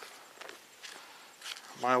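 Thin Bible pages being leafed through by hand: a few faint paper rustles and small ticks. A man's voice starts near the end.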